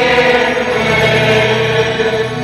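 Slow sacred chant sung by a choir, with long held notes that move to new pitches about halfway through.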